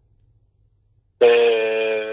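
A young man's long hesitation 'eh', held at one steady pitch for about a second, heard over a telephone line; it starts about a second in, after a pause of near silence.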